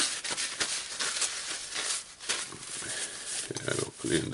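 Workbench handling noise: a rag rubbing on greasy gloves and small clicks and scrapes of metal parts as the rotary hammer's gearbox housing is handled. Near the end there is a short, low grunt-like voice sound.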